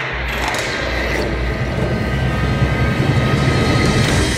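Film soundtrack sound design: a dense, low rumbling swell with a metallic, mechanical texture that grows gradually louder.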